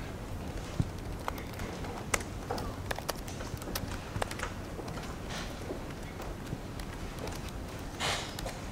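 Irregular clicks of keys being typed on a laptop keyboard, a few strokes a second.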